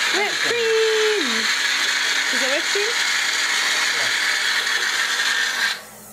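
Personal bullet-style blender running loudly and steadily while whipping cream, then cutting off abruptly near the end.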